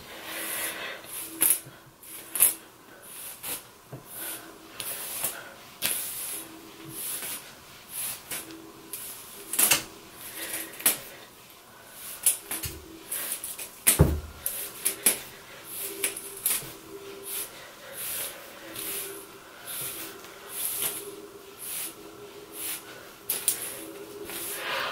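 A hairbrush drawn again and again through a long, straight synthetic wig, a short swishing stroke every second or so. One duller thump comes about halfway through.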